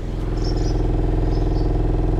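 Rockford Fosgate subwoofer in a ported enclosure playing a 21 Hz test tone, heard as a steady low drone with buzzy overtones that swells in the first half second and then holds. The tone is well below the box's port tuning of about 29 Hz, so the port gives little help and the cone makes large, visible excursions.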